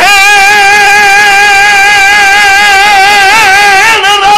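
A zakir's voice holding one long, high sung note in his chanted majlis recitation, wavering in pitch near the end; loud.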